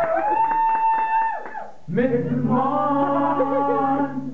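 Several voices singing a comic song together to strummed acoustic guitar, holding long notes in one phrase, a brief break about two seconds in, then a new held phrase with lower voices joining.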